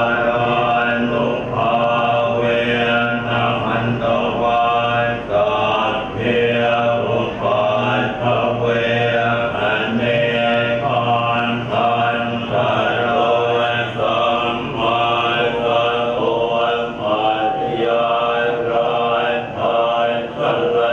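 Group of Thai Buddhist monks chanting Pali verses together in a continuous unison recitation, amplified through a public-address system.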